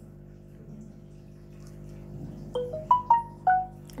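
Samsung Galaxy S9+ playing a short marimba-like jingle of about six quick notes that step up and down, over a faint steady hum.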